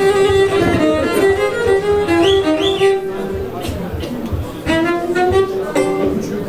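A Black Sea kemençe, a small bowed fiddle, plays a live folk melody of held notes with quick ornamental slides, with voices under it. The melody breaks off just before the end.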